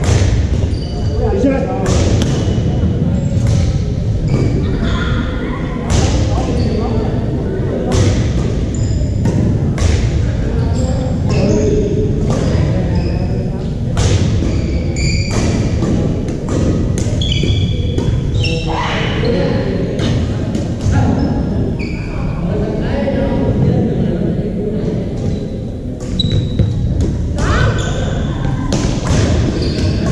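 Badminton play on a wooden gym floor: many sharp racket strikes on the shuttlecock and short high sneaker squeaks, echoing in a large hall over a steady din of voices from other courts.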